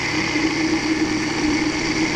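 Electric countertop blender running, its motor giving a steady hum with a high whine as it churns a thick brownish mixture.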